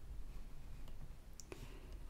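A faint computer mouse click about one and a half seconds in, over a low steady hum.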